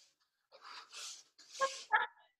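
Soft, breathy laughter: a few short puffs of exhaled breath, with a couple of brief voiced catches near the end.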